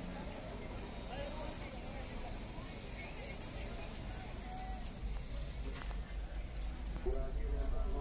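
Busy street-market ambience heard from inside a car: background chatter of many voices with traffic noise. A low rumble from the car grows louder about five seconds in.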